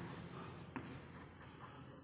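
Chalk writing on a chalkboard: faint scratching as letters are formed, with one sharper tap of the chalk about three-quarters of a second in.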